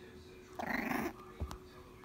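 A puppy gives one short bark about half a second in, followed by two soft knocks.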